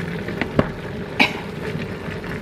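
A wooden spatula knocks against a steel cooking pot while stirring chicken feet: two quick knocks about half a second in, then a sharper, louder one just past a second. A steady low hum continues in the background.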